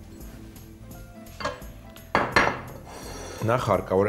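Background music, with a sudden loud clatter of kitchen dishes and utensils about halfway through, and a voice near the end.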